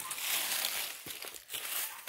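Dry fallen leaves and brush rustling and crunching underfoot as someone walks through leaf litter.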